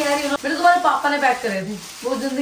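Plastic bag and gift wrapping crinkling and rustling as a present is pulled out of it, with a short sharp click a little under half a second in.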